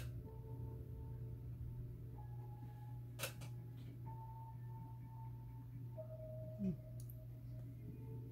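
Quiet room with a steady low hum and a few faint held tones, broken by a sharp click about three seconds in and a softer one near the end as a lip-gloss tube and its wand are handled.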